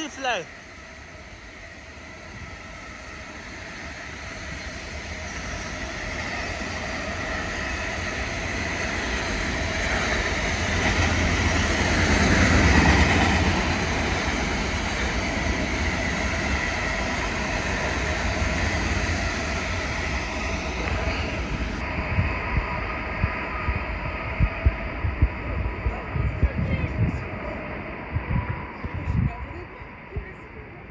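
Long freight train of empty flat wagons passing on the far track. A steady rumble and rail hiss builds over the first dozen seconds and then holds. From about two-thirds of the way in, irregular metallic clanks and knocks from the wagon wheels over the rails stand out as the train draws away.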